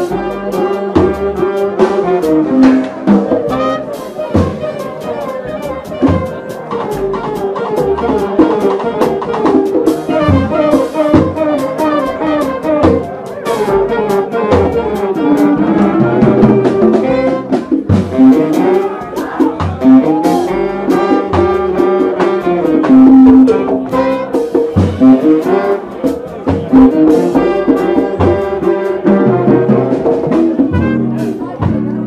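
Live jazz band playing: horns carry a winding melody over a drum kit with frequent cymbal and drum strokes.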